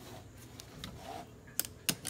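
Seat belt webbing sliding through a hand with a soft rubbing, then two sharp clicks near the end from the belt's metal latch plate.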